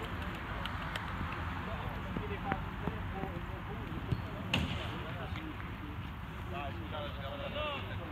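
Faint voices of players calling and chatting on the pitch over a steady low background rumble, with a couple of short sharp knocks about four seconds in.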